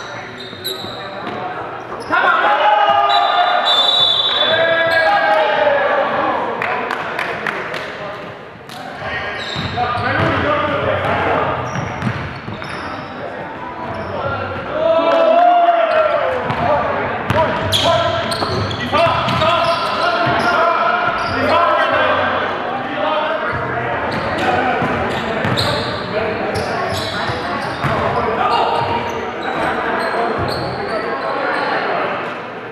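Live sound of an indoor basketball game: players' voices calling out, a basketball bouncing on the hardwood floor and sharp knocks on the court, echoing in a gymnasium.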